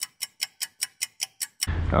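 Clock-ticking sound effect: rapid, even ticks about five a second that cut off near the end, giving way to outdoor background noise.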